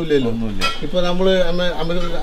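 A man talking, with a brief sharp click about half a second in.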